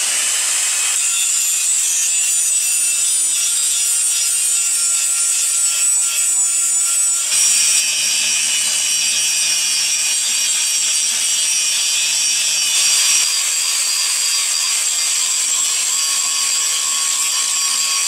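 A 4.5-inch Milwaukee angle grinder running under load, its abrasive wheel grinding metal samples for a spark test: a steady, high-pitched grinding noise. The tone shifts about seven seconds in, when a different metal sample is under the wheel.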